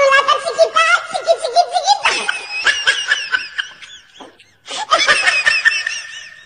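Laughter in repeated bursts, with a higher-pitched stretch of laughing in the middle and a brief break about four seconds in.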